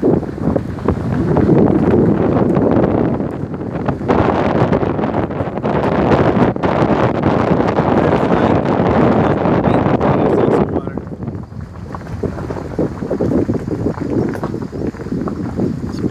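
Wind buffeting the microphone over the rumble and crunch of travel along a bumpy gravel road, with many small sharp clicks. It eases off about eleven seconds in.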